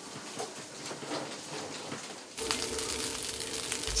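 Quiet restaurant room sound, then about two and a half seconds in a sudden change to the hiss of rice frying in a pan, under a steady low hum.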